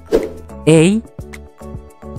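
Background music with steady sustained tones. A short sound effect comes right at the start, as an answer picture pops onto the screen, and a voice says "A" just after.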